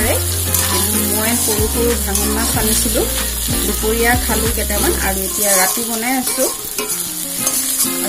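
Brinjal and potato pieces sizzling in hot oil in a metal kadai, with a metal spoon stirring and scraping them against the pan in repeated strokes.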